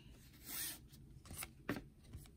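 Trading cards being flipped through by hand, one card slid off the stack against the next: a soft swish about half a second in, then a few light ticks of card edges.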